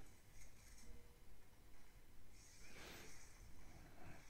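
Near silence: faint room tone, with one soft, brief hiss a little past the middle.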